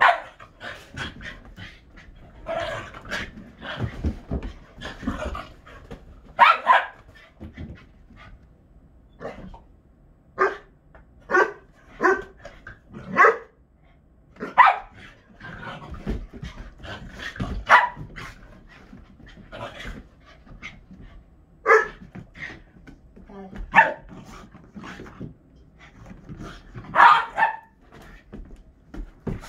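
Dogs barking during rough play: about a dozen short, sharp barks spread out with gaps between them, and panting in between.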